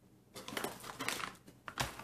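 Foil-lined paper coffee bag crinkling as it is handled while beans are shaken out of it, with a sharp knock near the end.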